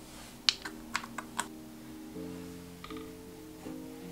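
Background music, over a handful of sharp clicks from half a second to a second and a half in, the first the loudest, with a softer little clatter near three seconds: a plastic cap handled against a small glass paint bottle.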